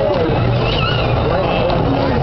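Amusement-park crowd ambience: indistinct voices from the crowd below over a steady low rumble.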